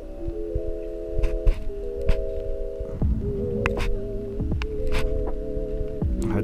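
Background electronic music: sustained chords that shift a few times, with a few sharp ticks over them.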